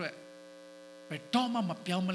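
Steady electrical hum from the microphone and sound system, heard alone for about a second before a man's preaching voice resumes over it.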